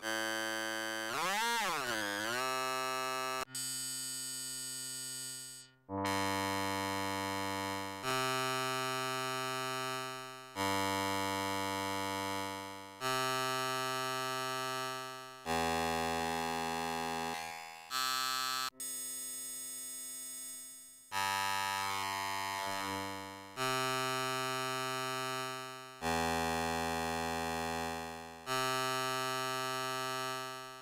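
Experimental synthesizer music: a run of held electronic chords, each starting sharply and fading away, changing about every two and a half seconds. Near the start a fast wobbling pitch sweep rises and falls.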